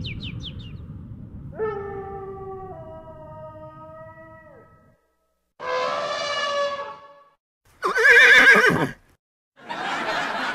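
A string of novelty sound effects. Chirps trail off in the first second. Then comes a held chord of steady tones that steps down partway through. It ends with two short calls that waver in pitch, like a horse whinnying; the second is louder and falls away at its end.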